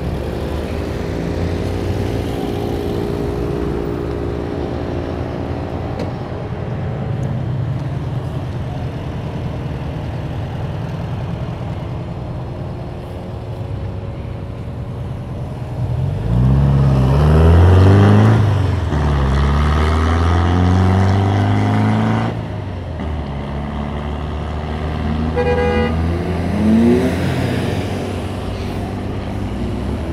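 Road traffic in a slow-moving jam: car engines running steadily close by. About halfway through, a vehicle accelerates loudly nearby for several seconds, its engine note rising and then holding. A short horn toot sounds later on.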